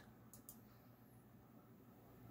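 Near silence, with two faint computer-mouse clicks close together less than a second in.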